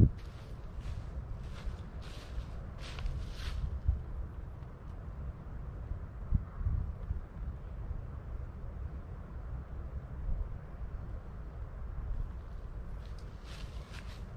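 Steady low wind rumble on the microphone, with a few short rustles and crunches of footsteps in dry leaf litter in the first few seconds and again near the end.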